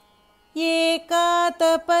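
A woman chanting a Sanskrit verse slowly, each syllable held on a steady note. The chanting starts about half a second in, after a short pause between verses, and comes in short phrases with brief breaks.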